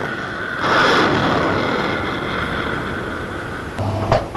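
An S-400 Triumf surface-to-air missile's rocket motor after launch, a broad rushing noise that swells about half a second in and slowly fades as the missile climbs away.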